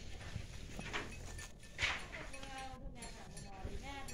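Livestock at a feeding trough: a short loud noise burst a little under two seconds in, then a long drawn-out animal call in the second half.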